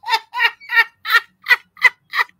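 A woman laughing hard in a run of short, high-pitched bursts, about three a second.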